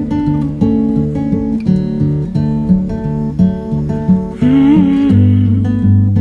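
Acoustic guitar played alone in an instrumental passage: picked single notes and chords over a moving bass line, settling into a deeper, fuller chord about five seconds in.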